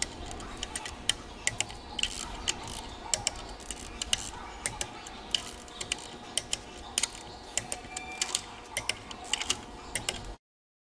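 Socket wrench clicking in short, irregular runs of sharp clicks as the main bearing cap bolts of a Cummins ISL engine block are worked down during their torque sequence.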